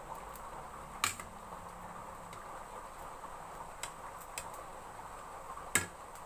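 A metal ladle knocks against a stainless steel soup pot four times: a sharp clink about a second in, two lighter ones, and another loud clink near the end. Under the clinks runs a steady low hiss from the steaming pot.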